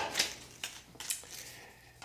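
A few faint clicks and rustles from a yellow tape measure being handled and its blade pulled out for measuring.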